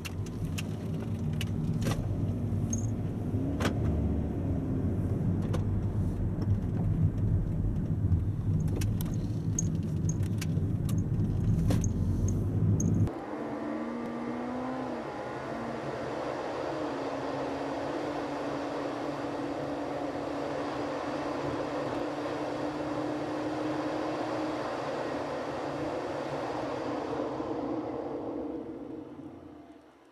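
Inside a Toyota Vellfire's cabin while driving: a deep, loud rumble of engine and road noise with scattered light clicks and rattles. About a third of the way in it cuts abruptly to a thinner, higher road noise, sped up threefold, with a faint steady hum that glides in pitch, and this fades out near the end.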